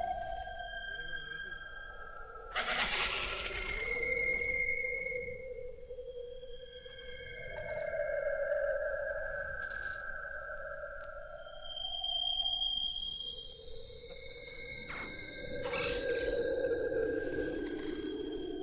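Electroacoustic tape music built from processed clarinet sounds: several sustained pure-sounding tones at different pitches overlap, each swelling and fading slowly. A swell of hiss cuts in about three seconds in, and another builds near the end.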